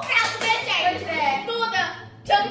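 Young girls' voices talking.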